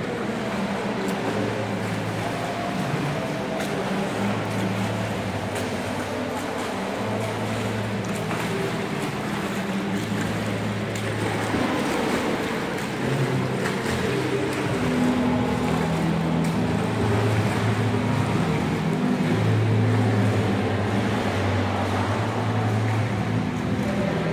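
Swimmer's freestyle stroke and kick splashing in an indoor pool, a steady wash of water noise in a hall that echoes. A low hum cuts in and out every second or two underneath.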